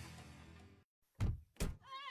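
Background music from a radio commercial fades out into a moment of dead silence. Then come two dull thumps, about 0.4 s apart.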